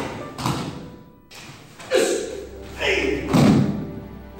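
Several heavy thuds of a person being thrown and falling onto padded martial-arts mats, with the loudest a little past three seconds in.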